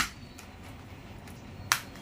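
Two sharp clicks about 1.7 seconds apart as a Poco M3 smartphone is handled, with a faint tick between them.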